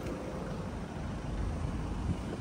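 Steady low background rumble from the street, with no distinct knocks, clicks or voices.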